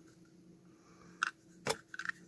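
Small plastic clicks of a tool prying at the battery-compartment door of a plastic action camera: two sharp clicks in the second half, the second the louder.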